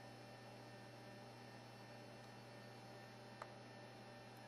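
Near silence: a steady low hum, with one faint click about three and a half seconds in.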